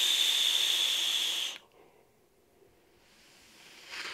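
Air hissing through the airflow of a Wotofo Flux sub-ohm mesh-coil vape as a long drag is pulled, with a steady whistle-like tone over the hiss. The airflow is a little loud but not very turbulent. It stops suddenly about one and a half seconds in, and a faint exhale starts just before the end.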